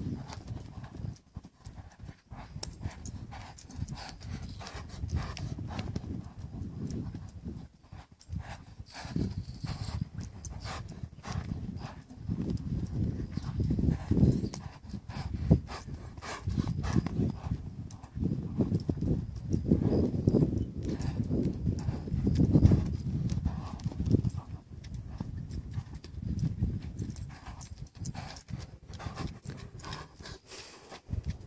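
Hoofbeats of a young cutting-bred colt loping in circles on deep arena sand, a run of low thuds that grows louder in the middle part.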